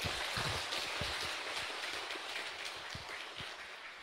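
Audience applauding in a hall, a dense even clatter of clapping that slowly dies away.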